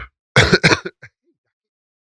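A man clearing his throat once, a short rasping burst about half a second in.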